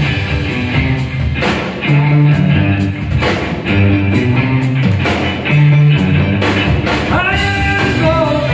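Live rock band playing a 1960s garage-rock cover: electric guitars, bass and drum kit in a steady groove, with the singer's voice coming back in near the end.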